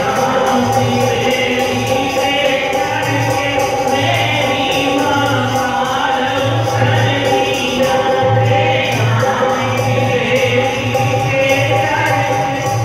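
A group of women singing a Punjabi devotional bhajan together over a steady harmonium drone, with a dholak drum keeping a regular beat.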